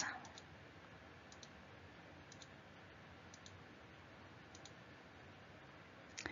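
Near silence: room tone with faint, short clicks about once a second.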